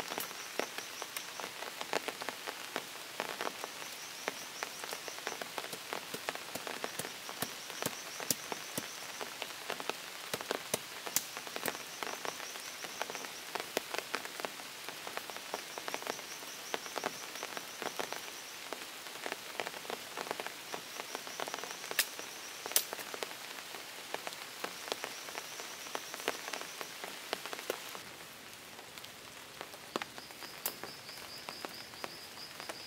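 Rain falling, a dense, irregular spatter of sharp drops that thins out near the end. Through it, a high pulsing call about a second and a half long repeats every three seconds or so.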